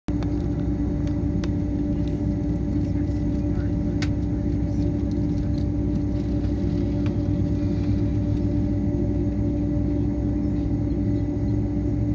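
Boeing 767-300ER cabin noise during taxi: the engines running near idle as a steady hum and rumble, with a few faint clicks.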